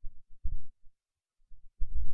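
Several low, dull thumps in two clusters, one at the start and another near the end.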